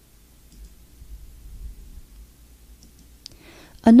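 A few faint computer mouse clicks over a low, steady hum, as web pages are navigated; a voice begins speaking right at the end.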